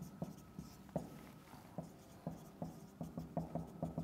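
Marker writing on a whiteboard: faint, irregular taps and short strokes as symbols are written, coming faster toward the end.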